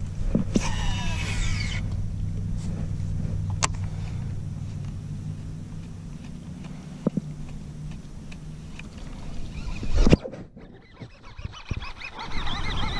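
A boat motor hums steadily and fades out after about eight seconds. Near the start there is a short run of high falling tones, and about ten seconds in there is one brief loud rush.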